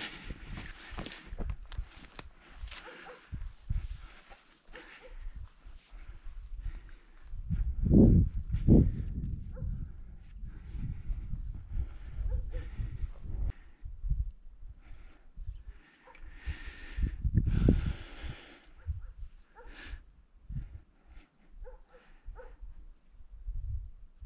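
Low rumbling buffets on the microphone that come and go, loudest about eight seconds in and again near eighteen seconds, with scattered light knocks and rustling between them.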